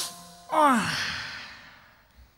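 A man's voiced sigh: a quick breath, then a sigh whose pitch drops steeply and trails off over about a second.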